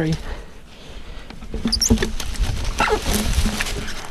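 Fallen branches and logs being pulled and shifted by hand, with scattered knocks and rustling of wood and leaves and short straining grunts from the man doing it. No chainsaw is running.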